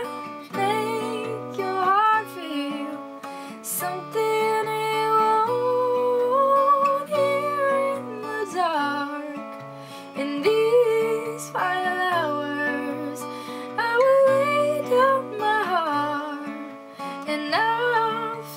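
A woman singing a slow ballad with long held notes that slide up and down, over a softly played acoustic guitar.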